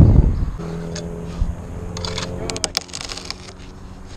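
A cut tree-trunk section let run on a rigging rope: a heavy low thump as it drops onto the line, then a steady hum from the rope running under load, with a quick flurry of clicks and knocks about two and a half seconds in.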